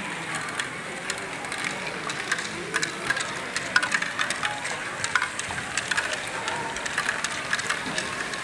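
LEGO Great Ball Contraption modules running: small plastic balls clicking and rattling through the tracks, lifts and gear-driven mechanisms, with many irregular sharp clicks over a steady mechanical hum.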